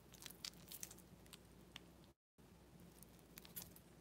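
Near silence, with faint scattered clicks of costume jewelry being handled and a brief total cut-out of sound about two seconds in.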